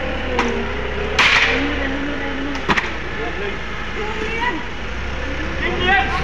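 Wooden pallet being set down on concrete: a knock, then a louder scraping clatter about a second in, and another sharp knock near three seconds. Workers' voices and a steady low hum run underneath.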